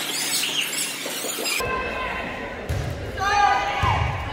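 Indistinct voices calling out in a reverberant gym, strongest in the second half, with a couple of dull thumps.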